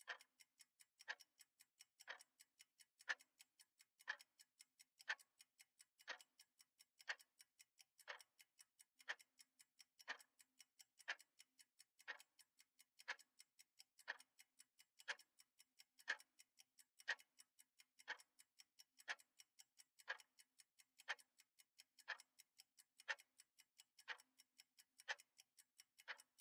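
Clock-style ticking of a countdown timer: one short, sharp tick each second, evenly spaced, starting as the timer begins.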